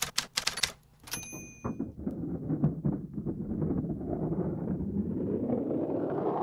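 Typewriter keystroke sound effect, a quick even run of clicks, ending with a single bell ding about a second in. Then skateboard wheels rolling on the concrete of an empty pool, a rough rumble that grows louder toward the end.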